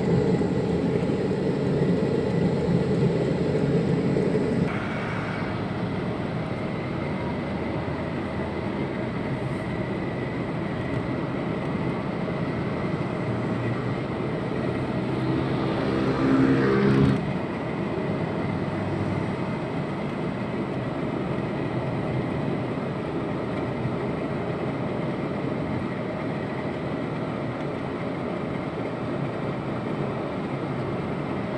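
Steady road and engine noise of a car cruising on a highway, heard from inside the cabin. It is louder for the first few seconds and swells briefly about halfway through.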